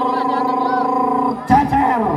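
A steady, held low pitched tone with voices over it, cutting off about one and a half seconds in; a sudden loud burst of sound follows right after.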